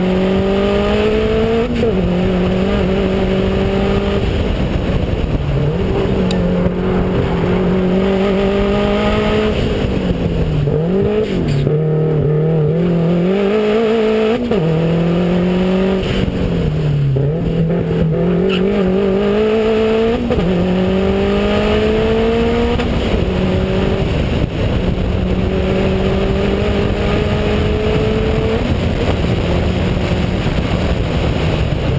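Subaru WRX's turbocharged flat-four engine under hard acceleration on a race track, its note rising in pitch and stepping down at each gear change, easing off and picking back up through corners. Heavy wind rush on an outside-mounted camera mixes with the engine.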